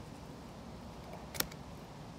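A fillet knife working through a whiting on a plastic cutting board: quiet cutting and handling over a steady low background, with one sharp click about one and a half seconds in.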